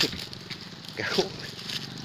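Small motorbike engines running at a distance, low and steady, as the bikes drag timber up a forest trail. Brief bits of a voice come at the start and about a second in.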